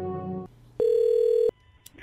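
Brass intro music ends, then a single steady telephone-line tone sounds for under a second, followed by a faint click just before the call is answered.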